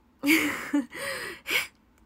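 A young woman laughing in three breathy bursts, the first the loudest.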